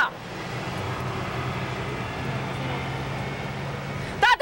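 Street traffic noise with a low steady engine hum, which settles into a more even drone about halfway through.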